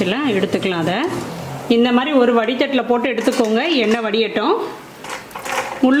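Murukku deep-frying in a kadai of hot oil, sizzling under a woman's talk, with a wire spider strainer stirring through the oil. The sizzle comes through on its own, faintly, for about a second near the end.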